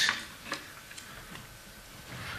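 Quiet room tone through a lectern microphone, with a few faint clicks in the first second and a half.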